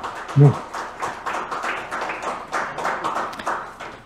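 A small group of people applauding, a handful of pairs of hands clapping unevenly, dying away near the end.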